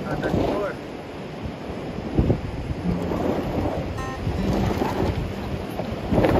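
Wind buffeting the microphone outdoors, an uneven low rumble, with faint voices early on and a single knock about two seconds in.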